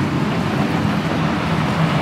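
Steady city street noise from passing traffic: an even rushing sound with a low hum underneath.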